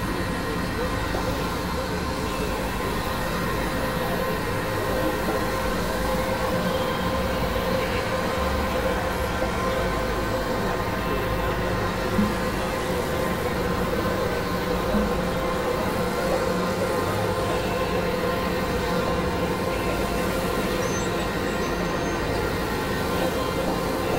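Experimental synthesizer drone: many steady, unchanging tones stacked over a rough, rumbling low noise, with a couple of brief peaks about twelve and fifteen seconds in.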